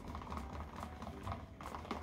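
Faint, irregular light clicks and taps of a stick blender's head being moved about in thick soap batter in a plastic measuring cup.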